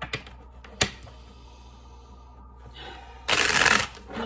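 A deck of cards being shuffled by hand: a couple of light taps early on, then a loud flurry of shuffling about three seconds in, lasting about half a second.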